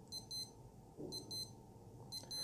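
Casio AQ-230GA-9D digital watch alarm sounding in a test, played by holding the upper-left button. It gives high-pitched electronic beeps in pairs, about one pair a second.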